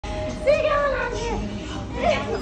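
A high-pitched voice talking, its pitch sliding up and down, from about half a second in until shortly after the middle.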